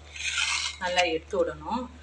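A metal spatula scraping and stirring a banana-flower and grated-coconut stir-fry in a steel pan, with a short metallic scrape in the first half second. A voice sounds underneath in the second half.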